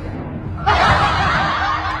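Laughter breaking in suddenly about two-thirds of a second in, with many overlapping voices, over continuing background music.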